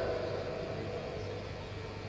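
A pause in an amplified speech: faint steady hiss with a low hum from the sound system.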